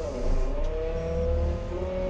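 Merlo 42.7 telehandler running, heard from inside its cab: a steady low rumble with a whine that dips and climbs again in the first half second, then holds steady.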